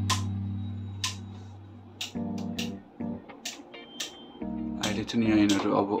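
Background guitar music fading out over the first two seconds, then a string of sharp clicks and ticks from hands working the string and clamps of a badminton racket on a stringing machine. A man's voice comes in near the end.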